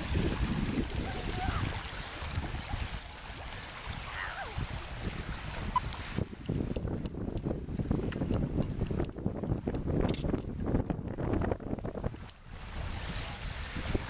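Wind buffeting the microphone in uneven, rumbling gusts over open water. The sound changes about six seconds in, turning duller and more rumbling.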